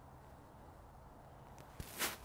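Near silence with faint outdoor background hum while a golfer stands over the ball. Near the end comes a faint click and a brief rising swish as the iron is swung back.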